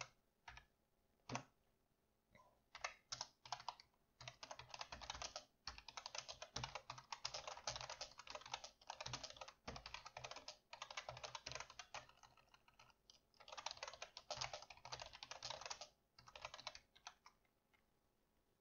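Faint typing on a computer keyboard: a few scattered keystrokes, then fast runs of typing with a brief pause partway through.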